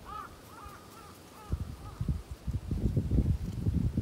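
A crow cawing in a quick run of short calls, fading out after about two seconds. From about a second and a half in, louder irregular low thumps and rustling close to the microphone take over.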